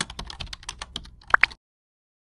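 Sound effect of an animated subscribe button: a quick run of typing-like clicks, about ten a second, ending in two short high blips about a second and a half in, then cut to silence.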